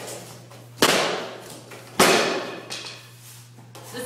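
Two loud crashes about a second apart: a painted canvas on its wooden stretcher frame being slammed down to smash it, each crash trailing off briefly.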